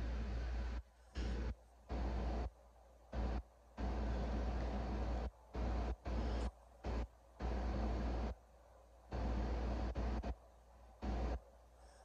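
Steady background hiss with a low hum, room tone, that cuts out abruptly to dead silence over and over, about a dozen short gaps, as if gated or chopped.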